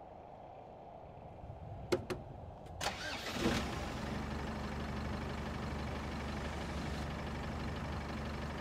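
A van's engine starting: a few sharp clicks about two seconds in, a short crank about three seconds in, then the engine catches and runs at a steady idle.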